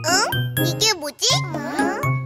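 Bouncy children's-song music with a jingly tune and a low bass note about twice a second, under high-pitched cartoon children's voices speaking.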